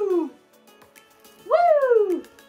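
A woman's high-pitched whoops, each jumping up in pitch and then sliding down over about a second: one tails off at the very start, another begins near the end. Background music plays underneath.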